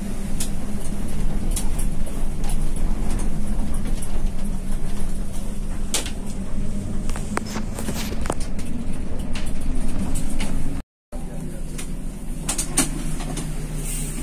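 Intercity bus's diesel engine running steadily, heard from inside the cab, with frequent clicks and rattles of the bodywork. The sound cuts out for a moment about eleven seconds in, then the engine resumes at a lower, idling pitch.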